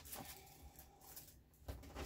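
Near silence: room tone with a few faint rustles and light knocks as haul items are handled.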